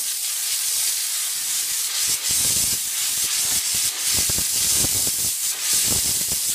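Chief commercial steam cleaner blowing a continuous jet of steam from its hand wand against a car wheel: a loud, steady hiss. From about two seconds in, uneven lower rushing joins it.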